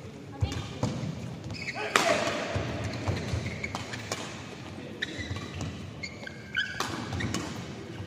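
Badminton rally: sharp racket-on-shuttlecock hits about a second apart, the hardest near two seconds in and again near seven, with short shoe squeaks on the court mat between them and voices in the background.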